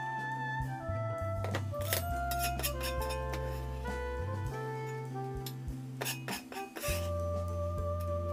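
Instrumental background music with held melody notes, over a few sharp taps of a knife chopping spring onion on a plastic cutting board.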